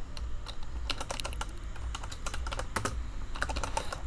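Computer keyboard being typed on, a quick irregular run of key clicks as a folder name is entered.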